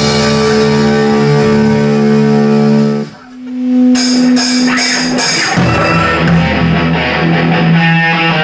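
Live rock band with distorted electric guitar and drum kit: a held guitar chord breaks off about three seconds in, a single low note rings on under a few cymbal strokes, and then the full band comes back in with drums.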